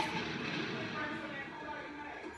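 Low room noise with faint, indistinct voices in the background.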